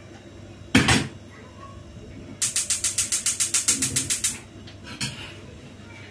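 A single metal clatter of kitchenware about a second in. A little later comes about two seconds of rapid, even clicking, about ten clicks a second, from a gas hob's spark igniter being held to light a burner.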